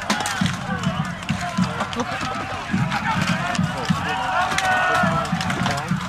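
Many fighters shouting at once in a mass melee, with frequent sharp knocks of rattan weapons striking shields and armour.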